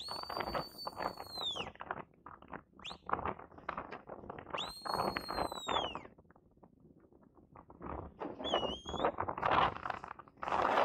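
Sheepdog handler's whistle commands to a collie working sheep. The first whistle is long and steady, about a second and a half, and drops at the end. A second one about four and a half seconds in rises, holds and falls. A short warbling whistle, lower in pitch, comes near the end. Bursts of rushing noise fall between the whistles.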